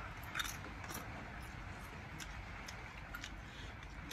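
Someone chewing a crunchy chip with the mouth close to the microphone: faint, scattered crunches over a low background hiss.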